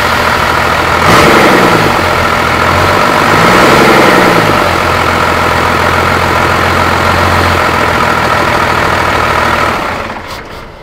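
6.0 Powerstroke V8 turbodiesel idling, revved up and back down twice: briefly about a second in, then again about three seconds in. It settles back to a steady idle.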